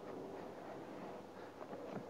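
Quiet background with a few faint, soft handling noises near the end as a plastic chemical-toilet cassette is handled and its pour spout turned out.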